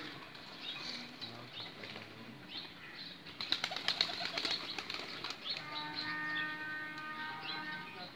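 A hand-held pigeon flapping its wings in a quick flurry of strokes a little past the middle, then settling. A steady held tone runs through the last couple of seconds.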